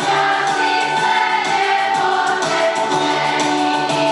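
A school children's choir singing in unison, with held notes over a musical accompaniment that keeps a steady beat.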